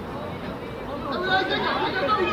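Chatter of several voices calling out and shouting over one another during a children's football game, getting a little louder in the second half.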